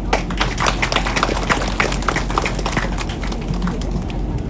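People applauding, a steady run of many hand claps.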